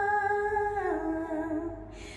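A woman's singing voice holding one long note that steps down in pitch about a second in and fades near the end.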